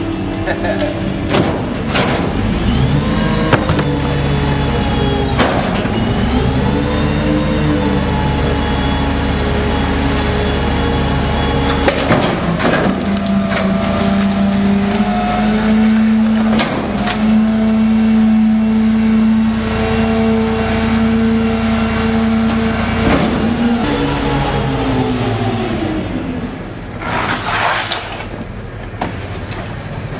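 Gasoline GMC C7500 garbage truck with a Pak-Mor rear-loader body running its hydraulic packer cycle. The engine revs up about two seconds in and holds high with a few pitch steps and clunks as the packer blade moves, then drops back to idle a few seconds before the end. A brief rattle of trash being tipped into the hopper comes near the end.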